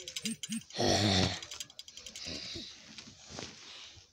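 A boy's loud, raspy groan lasting about half a second, about a second in, after two short vocal blips. Softer rustling of plush toys being handled follows.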